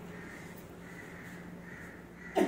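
A faint bird call heard over quiet room tone.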